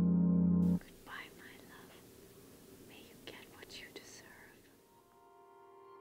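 Sustained ambient music stops abruptly under a second in, leaving faint room hiss and a few seconds of quiet whispering. Soft sustained music fades back in near the end.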